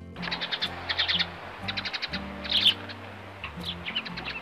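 Soft background music with sustained low notes, and birds chirping over it in short repeated bursts.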